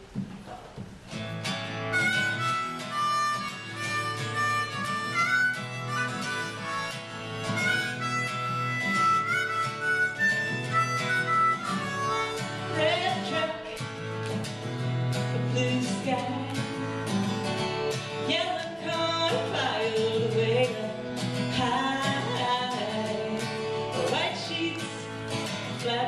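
Acoustic guitar strummed with a harmonica playing the melody over it, the instrumental opening of a country-folk song, starting about a second and a half in.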